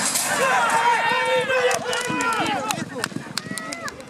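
Racehorses breaking from a starting gate: a sudden loud clatter as the stall doors fly open, then many people shouting, with sharp knocks scattered throughout.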